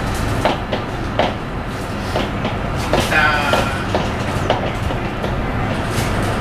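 Electric commuter train running on the rails, heard from inside the car: a steady rumble with rail-joint clicks about every half second, and a brief high squeal about three seconds in.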